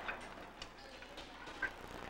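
A few faint, sparse ticks of a cleaver blade touching a wooden chopping board as small pieces of water chestnut are carved.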